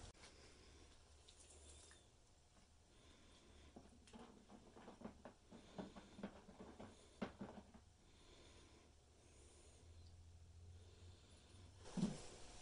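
Near silence, with faint small splashes and clicks for a few seconds in the middle as a gloved hand feels around in a plastic tub of rusty vinegar, fishing out the soaking nut and bolt.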